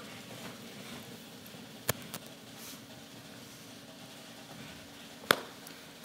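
Quiet auditorium room tone with a faint steady hum, broken by a sharp knock about two seconds in and another about five seconds in.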